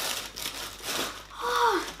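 Crinkling of a clear plastic bag being handled, followed near the end by a short vocal sound that falls in pitch.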